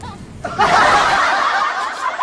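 Laughter from several voices starts about half a second in and carries on.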